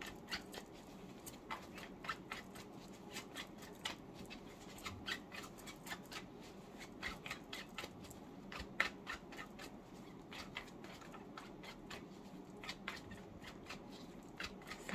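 A tarot deck being shuffled by hand, overhand style: a quiet run of irregular card clicks and flicks, a few each second.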